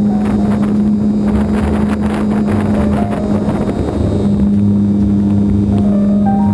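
Steady drone of a foam Super Cub LP RC plane's electric motor and propeller, heard from the onboard camera. Wind rushes over the microphone, and a few notes of background music sound faintly over it.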